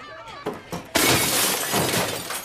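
Glass shattering: a sudden loud crash about a second in, followed by about a second of breaking and falling glass.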